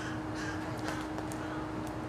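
A few short bird calls in the first second and a half, over a steady low hum.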